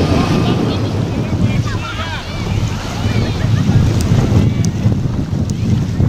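Wind rumbling on the microphone over small waves lapping the shore, with distant voices of swimmers calling out about two seconds in.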